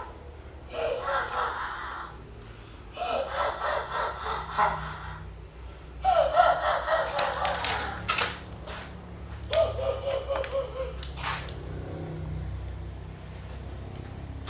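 Men's voices talking in short stretches with pauses between, the recogniser catching no words, and a few sharp clicks about halfway through and again near eleven seconds in.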